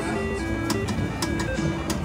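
Three-reel slot machine spinning, with a simple chiming electronic melody and a few sharp clicks as the reels come to a stop.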